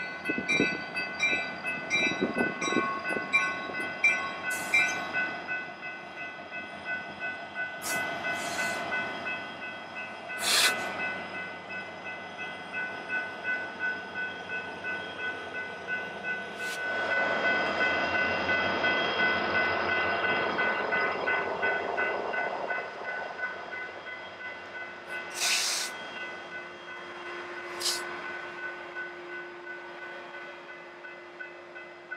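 Union Pacific freight train of diesel locomotives and hopper cars rolling through a grade crossing, its steel wheels rumbling on the rail, with the crossing's warning bell ringing. The sound swells in the middle as locomotives pass, and a few sharp metallic clicks come from the wheels.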